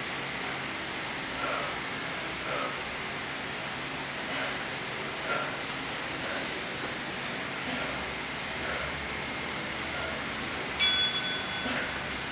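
A single bell-like chime rings out suddenly near the end and dies away over about a second, over a steady hiss. It is the interval timer's signal that the exercise set is over.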